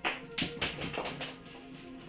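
Music playing in the background, with a sudden tap right at the start and a quick cluster of louder taps and knocks about half a second in.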